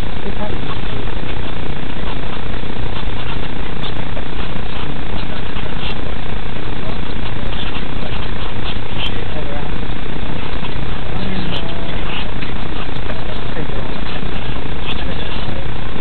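Steady, loud rushing noise inside a car's cabin while it sits stopped with the engine running, picked up by a dashcam microphone, with scattered faint clicks.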